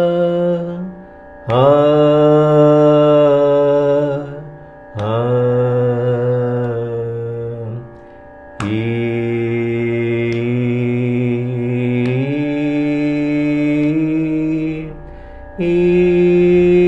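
A male Carnatic vocalist sings long held notes in four phrases, separated by short breaths. The pitch steps down over the first three phrases, then climbs back up in steps in the last.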